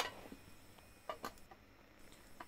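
Quiet workshop background with a couple of faint light clicks about a second in.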